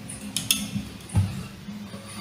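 The last acoustic guitar chord rings out faintly and fades. A few sharp metallic clicks and a soft knock come as the harmonica in its neck holder is handled.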